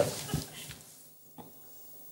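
Studio audience laughter dying away over the first half-second, leaving a quiet room with one faint click.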